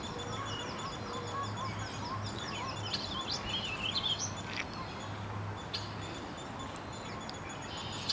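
Wild birds singing: a long, rapid trill of high notes, then a short warbling phrase about three to four seconds in. A faint low hum comes and goes underneath.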